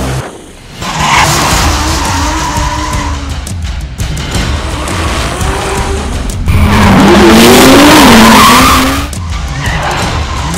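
A drift car's engine revving up and down as its tyres skid and squeal through a hairpin, loudest for a couple of seconds near the end. Background music with a steady beat runs underneath.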